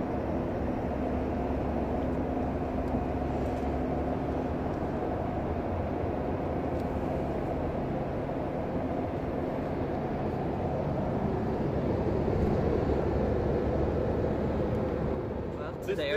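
A car driving at freeway speed, heard from inside the cabin: a steady rumble of road and engine noise, growing a little louder near the end.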